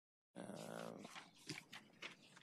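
The sound cuts out completely for a moment, then comes back suddenly with a short, steady voiced hum from a person near the microphone. Light clicks and rustles follow.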